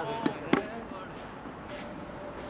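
Two quick sharp knocks of a tennis ball about a quarter second apart, the second louder, under a man's voice.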